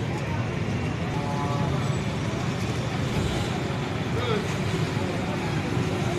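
Street noise: a steady rumble of road traffic with voices mixed in.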